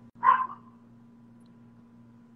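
A dog barking once, a single short bark.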